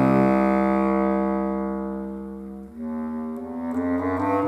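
Bass clarinet with piano accompaniment: a held chord fades over the first two and a half seconds, then a new phrase begins with the bass clarinet's low notes, changing pitch near the end.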